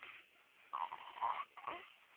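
Baby fussing: a few short breathy sounds in the second half, with no clear crying pitch.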